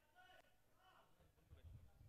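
Near silence: faint voices in the background during the first second, then a faint low rumble from about one and a half seconds in.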